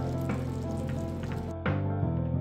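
Massaman curry sizzling and bubbling as it simmers in a frying pan, with background music. The sizzle drops out near the end.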